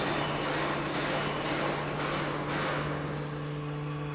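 A shaking table running a sweep excitation under a heavily loaded server rack: a steady machine hum under broad rumbling noise that swells about twice a second with the table's motion. The swelling fades out a little after halfway.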